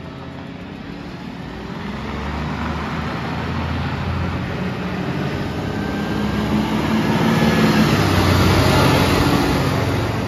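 Volvo side-loader recycling truck driving toward the listener and passing close by, its engine and tyres growing steadily louder to a peak near the end.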